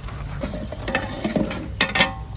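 Metal ladle stirring curry masala in an aluminium pot, scraping and clicking against the pot, with one sharp clank against the rim near the end that rings briefly.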